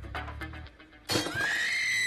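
Background music fades out. About a second in, a loud, high-pitched cry begins, its pitch arching slightly and starting to fall as it runs on.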